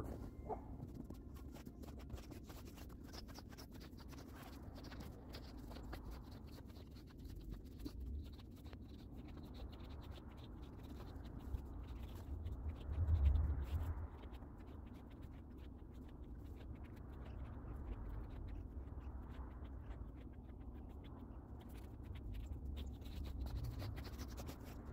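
Faint, steady scratching of a long-handled brush sweeping snow off glass solar panels, with a low rumble that swells about 13 seconds in.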